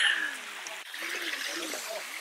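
Shallow hot-spring stream running and trickling steadily over stones.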